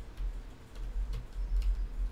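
A few light, irregular clicks at a desktop computer, over a low, pulsing rumble.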